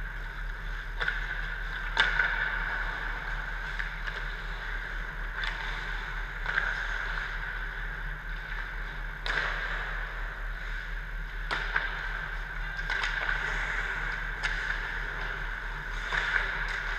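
Ice hockey skates scraping and carving on rink ice, with a few sharp clacks of sticks and puck, over a steady low hum in the rink.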